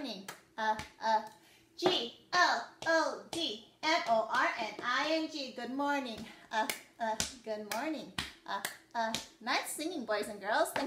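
A woman singing a children's good-morning song in a sing-song voice, with hand claps in time.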